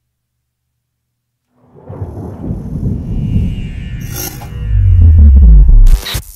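Outro logo sting: starting nearly two seconds in, a swelling low rumble builds with a whoosh and a crackly glitch sound, rising to a loud deep boom and a sharp burst at the end.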